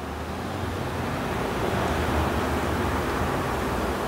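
A steady rushing noise, like wind or surf, that swells in just before and holds evenly throughout.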